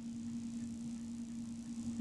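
A pause between words, filled by the recording's steady low electrical hum and a faint, even hiss.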